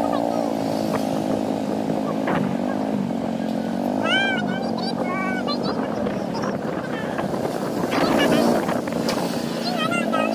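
A motor vehicle's engine running while moving through slow city traffic, its pitch rising and falling gently with speed. A few short, high chirping sounds come about four seconds in and again near the end.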